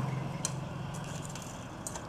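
Steady low hum with a faint regular pulse, typical of an electric standing fan running, with two faint clicks from handling, about half a second in and near the end.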